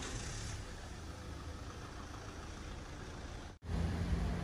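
Street traffic: a motor vehicle engine running nearby, a low steady rumble under faint street noise, dropping out for an instant near the end.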